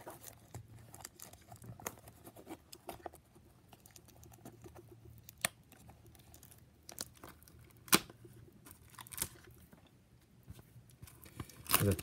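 Cellophane shrink wrap on a card box being picked at and torn by hand: faint, scattered crinkling and crackling with a few sharp clicks, the loudest about halfway through and again at about eight seconds.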